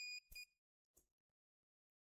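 Faint, high-pitched beeps from a portable transistor mini spot welder as its pens are pressed to a welding strip on the battery cells: two short beeps in the first half second, then a faint click about a second in.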